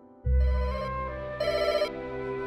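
Mobile phone ringtone ringing: a sudden electronic tune in two brighter rings about a second apart.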